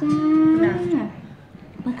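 A woman's voice calling "คุณตา มา" ("grandpa, come") in a drawn-out sing-song: one long held note that slides down and trails off about a second in.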